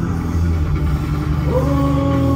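Live band holding a loud, sustained low drone. About a second and a half in, a higher tone slides up and holds over it.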